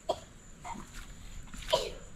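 A person sneezing once, near the end, after a couple of faint short sounds.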